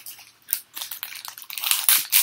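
Foil booster-pack wrapper being crinkled and torn open, a run of irregular crackles and rips that grows louder in the second half.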